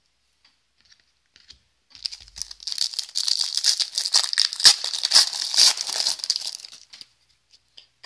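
A trading-card pack's plastic wrapper being torn open and crinkled by hand: a dense run of crackling and tearing that starts about two seconds in and lasts about five seconds.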